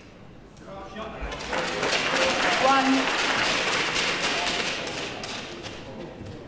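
Snooker crowd cheering and applauding with scattered shouts, rising about a second in and fading slowly toward the end, in reaction to a red being potted.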